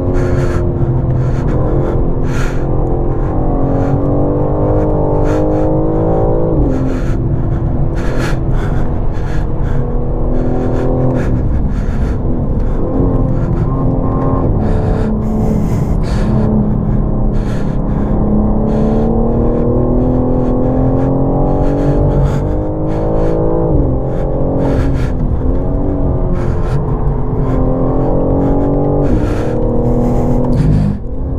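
In-cabin sound of a BMW M4's twin-turbo straight-six under hard track driving. The engine note climbs in pitch and then drops sharply at gear changes, several times over.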